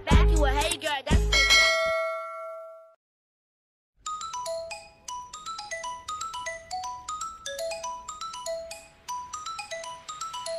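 Intro music with a beat fades out in the first three seconds. After a second of silence, a light, plinking, bell-like melody starts about four seconds in, made of short mallet-like notes.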